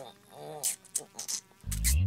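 A short vocal laugh and a few breathy sounds, then music with a heavy bass beat kicks in near the end.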